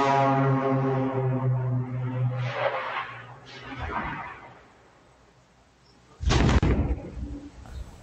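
A low-flying twin-engine Piper's engines drone steadily, heard through a doorbell camera's microphone, and fade out about four seconds in. Around two seconds later comes a sudden loud boom lasting about a second: the plane crashing and exploding.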